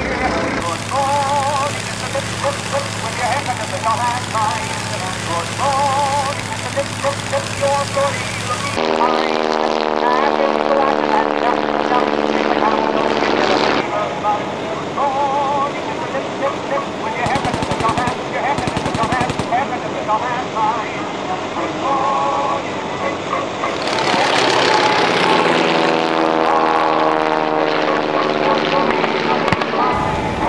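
Propeller-driven WWI-replica fighter aircraft flying past, their engine tone falling in pitch as a plane goes by about nine seconds in and again near the end. A rapid run of sharp cracks comes around the middle.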